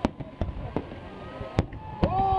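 Aerial fireworks shells bursting: four sharp bangs, the loudest near the end.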